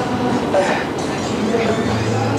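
Steady outdoor street noise, a continuous rumble, with voices murmuring in the background.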